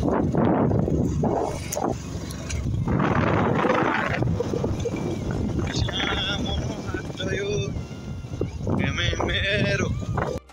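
Wind buffeting the microphone in gusts, strongest in the first few seconds, with a person's voice faintly in the background later on.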